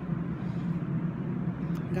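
Steady low background rumble of a transit station, with no sharp events.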